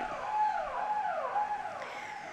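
Soft electronic background music: a held synthesizer note with a sweeping tone that falls about twice a second.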